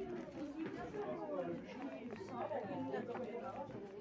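Indistinct chatter: several people talking at once, their overlapping voices unclear.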